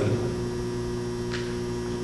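Steady electrical mains hum through the sound system during a pause in speech, with one faint short tick past the middle.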